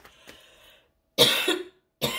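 A woman's single short cough about a second in, after a moment of near quiet.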